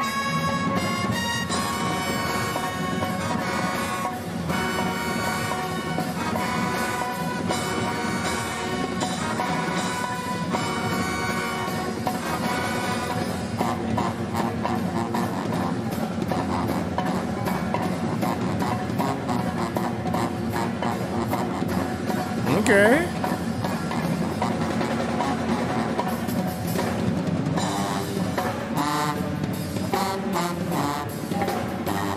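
College pep band playing: sousaphones, trumpets and other brass over a drum kit and marching percussion. A short upward-sliding call rises above the band about three-quarters of the way through.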